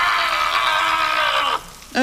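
A cartoon character's long, strained, wavering cry, its pain at a super-hot chili candy, held at one pitch and cut off suddenly about one and a half seconds in.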